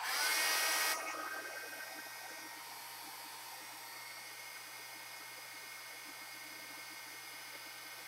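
Small handheld electric blower (a craft heat tool) switched on. Its motor whines up at the start and is loudest for about the first second, then runs steadily with a rush of air, blowing wet alcohol ink across the paper.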